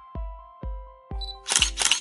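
Background music with a steady beat of about two beats a second and held notes. Near the end comes a quick double click like a camera shutter, a sound effect marking the change of picture.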